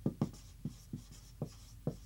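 Marker writing on a whiteboard: about six short, separate strokes as a word is written out.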